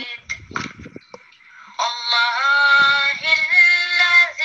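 A recorded Quran recitation (tarteel) being played back: after a few soft clicks in the first two seconds, a single voice comes in loudly and chants in long, held, melodic notes.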